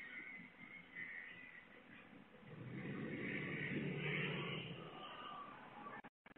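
Pickup truck engine running as the truck pulls into a driveway, faint and muffled through a doorbell camera's microphone; it rises about two and a half seconds in and fades again before the end.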